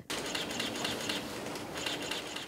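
Many press camera shutters clicking rapidly in overlapping bursts, over a faint steady hum.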